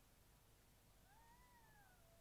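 A single faint meow-like call, just over a second long, rising then falling in pitch, over near silence.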